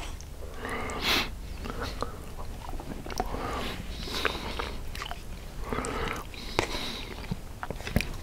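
Close-miked chewing and mouth sounds of a man eating cabbage roll casserole, with a few sharp clicks and taps from the fork on the paper plate.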